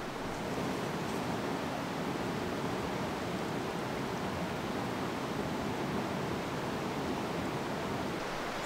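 Steady rushing of a flowing river, an even wash of water noise with no breaks.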